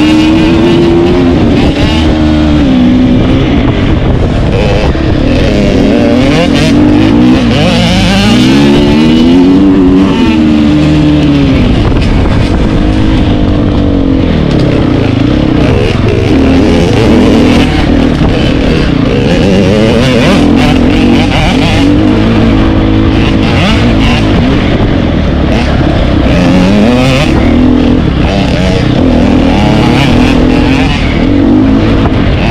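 Dirt bike engine heard up close from the rider's helmet, revving up and down over and over with the throttle and gear changes while riding an off-road course.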